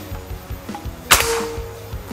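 A single shot from a PCP Morgan Classic air rifle about a second in, a sharp crack that dies away quickly; the rifle is filled to 3000 psi.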